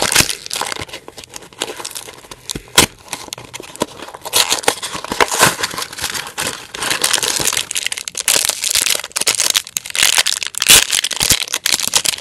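Cardboard and paper blind-box packaging of a Minecraft mini-figure being opened by hand: steady crinkling and tearing with sharp clicks, busier and louder from about four seconds in.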